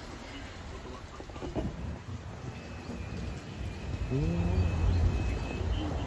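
Thunder rumbling: a deep rumble that builds from about two seconds in and is loudest in the last two seconds.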